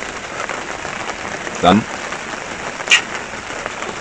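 Steady heavy rain falling in a summer thunderstorm, with one sharp tap about three seconds in.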